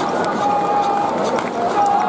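Dense, steady noise of a baseball stadium crowd: many voices from the cheering section, with a melody of held notes running over it.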